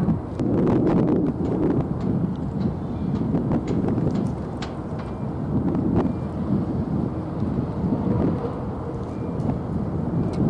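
Wind buffeting the camera microphone: a gusty low rumble that swells and eases every second or so, with a few faint clicks.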